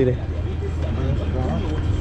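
Voices talking over a steady low hum.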